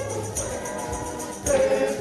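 Church choir singing a hymn, with a steady percussive beat under the voices; the singing grows louder about one and a half seconds in.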